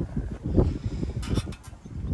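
Wind buffeting the microphone in uneven low gusts, with a few short rustles a little past a second in.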